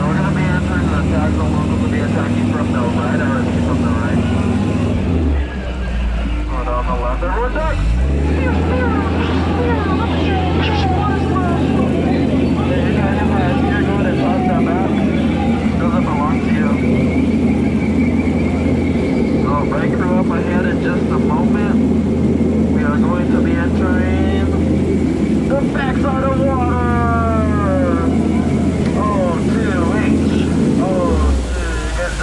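Jungle Cruise boat's motor running with a steady low hum. Its note drops about five seconds in and climbs back up around eight seconds.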